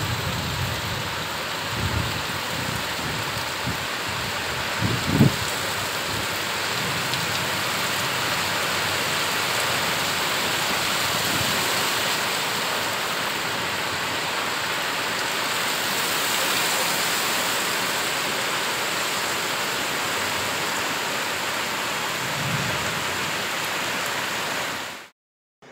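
Heavy rain falling steadily, an even hiss, with a few low rumbles underneath and one brief louder thud about five seconds in.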